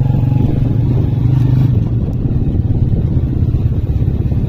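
A small engine running steadily at a low, even pitch with a fast regular putter.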